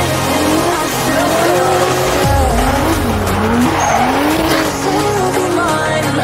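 A drift car sliding: its engine revs repeatedly rise and fall while the tyres squeal. Electronic music with a steady bass line runs underneath.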